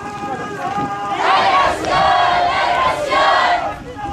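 Crowd of marchers chanting a slogan together in rhythmic phrases. A louder chanted stretch starts about a second in and drops away just before the end.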